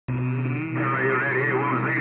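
A voice coming in over a CB radio receiving on channel 6, thin and narrow-sounding and hard to make out, with a steady low hum under it.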